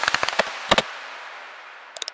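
Computer keyboard typing sound effect: a quick irregular run of sharp key clicks, then two more about three quarters of a second in, over a fading echo. A few more clicks come near the end.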